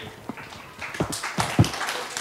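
A picture book being handled and set on a wooden bookshelf: a few soft knocks, about four in under two seconds, with rustling in the second half.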